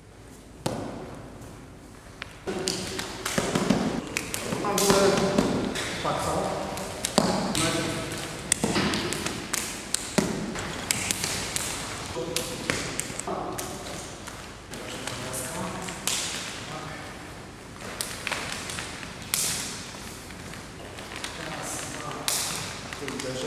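A man talking, with scattered sharp taps and thuds from the arm contact and footwork of a Wing Tsun blocking drill on a wooden floor.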